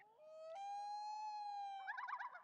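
A thin, high-pitched vocal note, a quiet falsetto coo. It steps up in pitch twice early on, holds steady, then breaks into a short warbling trill near the end.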